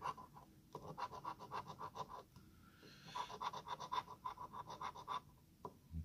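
A coin scraping the scratch-off coating from a lottery ticket in rapid back-and-forth strokes. There are two runs of scratching, with a short pause about two seconds in.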